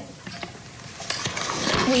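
A woman's breath drawn in audibly at a close microphone: a breathy hiss rising through the second half of a pause in her speech, with her voice starting again right at the end.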